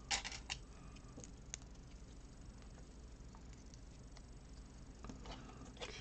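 Loose plastic Lego pieces clicking against each other as they are picked through by hand: a quick run of clicks at the start, then a few scattered single clicks.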